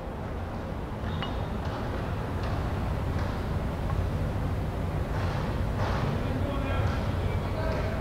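Background noise of a large indoor gym: a steady low rumble with faint, distant voices.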